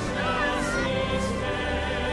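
A choir singing slow, held notes with vibrato over instrumental backing.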